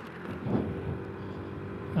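A 2019 Honda Vision 110 scooter's single-cylinder engine pulling at full throttle as it accelerates from a standstill, its note held steady.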